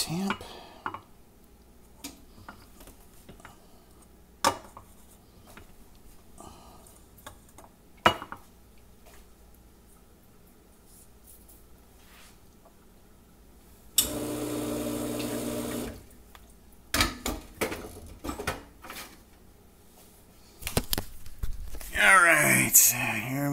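Metal knocks and clinks of a bottomless espresso portafilter being handled and tapped, with sharp single knocks about four and eight seconds in. About two-thirds of the way through, a machine runs steadily for about two seconds with a hum and a hiss, and the metal clatter picks up again near the end.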